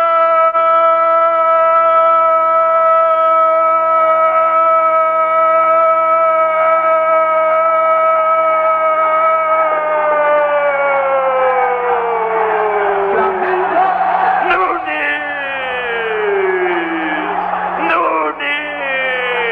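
A sports commentator's drawn-out "goool" shout for a goal, held on one high note for about ten seconds, then sagging in pitch as his breath runs out, followed by shorter falling shouts near the end.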